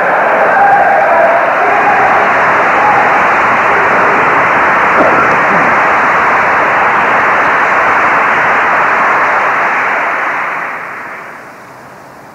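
Audience applause: a dense, even clatter of many hands, heard muffled through the narrow band of an old recording. It dies away from about ten seconds in.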